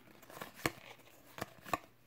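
Trading cards being flipped through by hand: cards sliding against one another in a stack, with about four short snaps of card edges.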